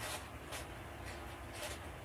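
Handmade wire spiral coil being twisted through the punched holes of a paper notebook: a few brief, faint scratchy rustles of wire rubbing on paper.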